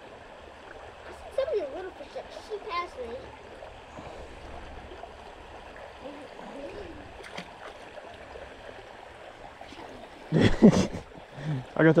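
Shallow creek flowing steadily over rocks, an even rushing burble, with a short loud burst of sound about ten and a half seconds in.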